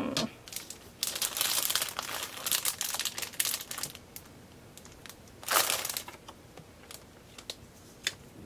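Paper scraps and cardstock rustling and crinkling as they are handled and laid on a card: a long stretch of rustling about a second in, then a shorter burst a little past the middle, with a few light ticks between.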